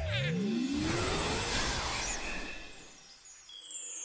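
Cartoon sound effect: a whoosh with one tone rising and another falling across it, fading out about three seconds in.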